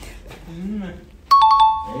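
A ding-dong chime sound effect: two bright ringing notes, a higher one and then a lower one, starting suddenly about two-thirds of the way in and ringing briefly. It is the loudest sound here, after a quiet voice.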